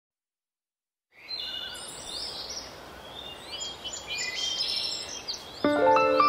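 Birdsong: many short chirps and whistles over a light hiss, starting after about a second of silence. Music with sustained notes comes in abruptly near the end.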